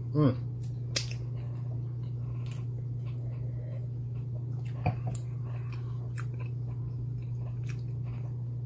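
Soft chewing and a few faint mouth clicks from a mouthful of coconut cupcake, with a short sip of red wine about five seconds in, all over a steady low hum.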